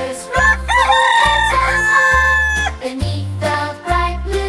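A rooster crowing once, a rising cock-a-doodle-doo that ends on a long held note, over a children's song's backing music with steady bass notes.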